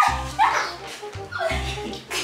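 Two short dog-like yelps, each falling sharply in pitch, about half a second and a second and a half in, over background music with a steady bass line.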